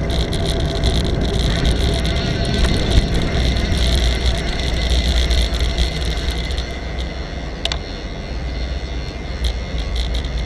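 Steady wind and road rumble on a moving bicycle-mounted camera's microphone, with light street traffic. A few sharp clicks come in the last few seconds.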